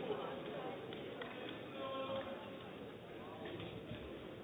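Quiet indoor sports-hall ambience with faint distant voices and a few light taps.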